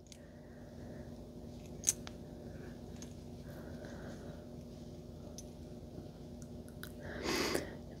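Faint handling of a crocheted granny square held close to the microphone: soft rustling of fuzzy yarn and a few small clicks, one sharper click about two seconds in, over a low steady hum.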